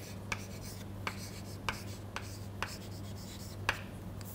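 Chalk writing on a blackboard: a series of short, sharp taps and brief scratches as letters are written, spaced irregularly about half a second apart.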